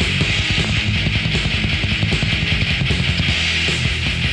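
Thrash metal from a 1996 demo tape recording: distorted electric guitars, bass and rapid drumming, loud and steady throughout.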